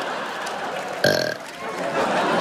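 Studio audience noise throughout, broken about a second in by a short, low, burp-like sound lasting about a third of a second.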